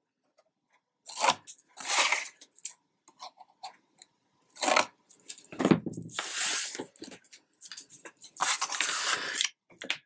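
Scissors snipping the corners off a cardstock frame, several short separate cuts in the first half, then paper sliding and rustling across a cutting mat as the cut-off pieces are swept aside and the card is handled.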